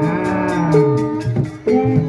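Live Javanese-style accompaniment music for a jaranan trance dance: held and wavering melodic lines, with a lower tone gliding downward, over quick, regular percussion strikes. The music briefly drops out about one and a half seconds in.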